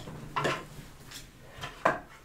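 Hard plastic pieces knocking on a wooden tabletop as a small die-cutting machine and its cutting plates are handled and set out: a light knock about half a second in and a sharper one just before the end.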